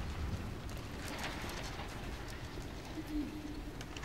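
Room ambience of a large domed reading room: a steady low rumble with scattered soft clicks and taps, and a short low coo-like tone about three seconds in.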